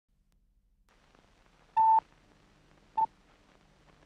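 Two short electronic beeps with a steady pitch of about 1 kHz, the first a quarter of a second long and the second shorter, about a second apart, over a faint low hum.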